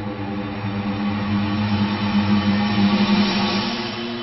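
A sustained low drone of steady tones with a hiss that swells louder about three seconds in, the kind of rumbling sound effect laid under an animated title card.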